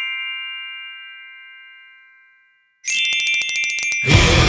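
Logo-sting music on bell-like chimes: several ringing tones fade away over about two and a half seconds. After a brief silence, a fast run of tinkling strikes starts, about ten a second.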